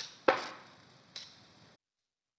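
A click, then a sharp knock with a short ringing tail, then a lighter click, from hands working at the top of a metal catalytic heater; the sound cuts off abruptly near the end.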